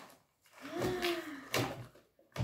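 Cardboard game boxes being handled and pulled from a parcel, with a sharp knock about one and a half seconds in. A short wordless voice sound, rising and falling in pitch, comes just before it.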